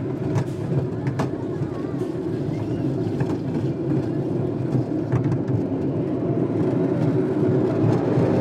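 Roller coaster train rumbling along its track, heard from aboard the car, with a few sharp clacks; the rumble grows gradually louder.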